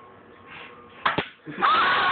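A Nerf blaster firing a foam dart at close range: a pair of quick sharp clicks about a second in as the dart is shot and strikes a face, then a loud burst of noise near the end.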